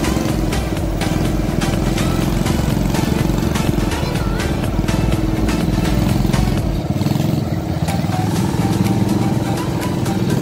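Honda Monkey mini bike's small single-cylinder four-stroke engine running as it is ridden slowly, with background music over it.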